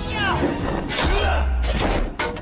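Film fight soundtrack: dramatic music with heavy crashing impact effects, one near the start and a bigger one about a second in, over a deep rumble, with a character's strained voice sounds early on.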